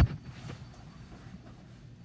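A dull thump right at the start as a dancer jumps and lands against her partner in a swing-dance lift. After it come faint room sound and a light knock about half a second in.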